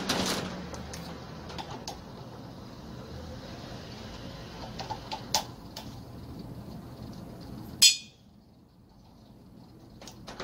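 Light clicks and taps of wire terminals and hands working on an air compressor's pressure switch, a few scattered small ticks, then one sharp, high, bright click about eight seconds in.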